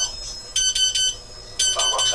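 Digital timer on a clamshell t-shirt heat press beeping: quick high beeps in short clusters, about one cluster a second, signalling that the pressing time is up.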